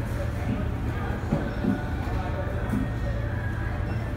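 Supermarket ambience: a steady low hum with faint background voices, and a few soft bumps near the middle.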